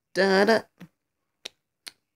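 A person's voice singing a single held "da" on a steady pitch, followed by three short, sharp clicks spaced through the rest of the second.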